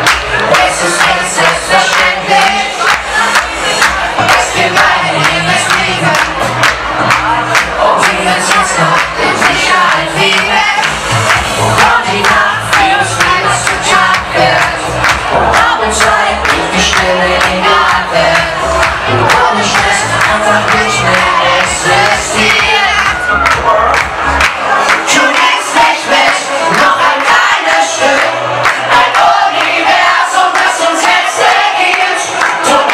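Live German Schlager song played loud: a male singer over backing music with a steady dance beat, with the crowd cheering and singing along. The bass beat drops out about five seconds before the end.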